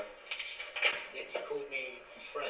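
Cutlery and plates clinking on a table: several light, separate clinks, with brief voices near the end.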